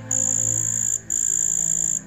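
A high-pitched, steady trill of night creatures, broken by a short gap about once a second. Soft, sustained background music plays underneath.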